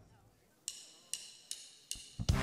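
A count-in before the band starts: four sharp clicks, evenly spaced at about two and a half a second, beginning about two-thirds of a second in after a moment of near silence.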